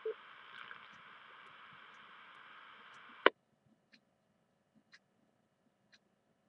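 FM radio receiver hissing with static for about three seconds after a two-metre-style VHF transmission ends, then a sharp squelch click as the channel closes and the hiss cuts off suddenly. Faint ticks follow about once a second.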